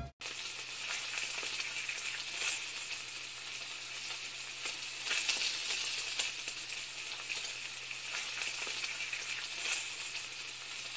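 Steady crackling sizzle like food frying, over a faint low hum. It starts abruptly after a sudden cut, with small crackles scattered through it.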